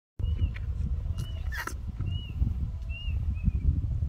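About five short, high squeaky calls from a small animal, each rising then falling in pitch, over a low wind rumble on the microphone. A brief rustle comes about halfway through.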